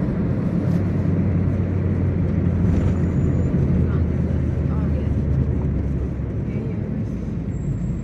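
Steady low rumble of road and engine noise inside a moving car.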